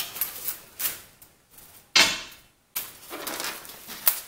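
Steel weights (iceboat runner blanks and a square steel bar) being lifted off a foam block and set down on a wooden worktable: a few light knocks, then one louder clank about two seconds in with a short ring.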